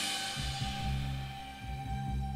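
Percussion ensemble playing: the ring of a big cymbal crash and ensemble hit fades away while low timpani notes are struck in a loose rhythm underneath, with a steady high metallic tone held over them.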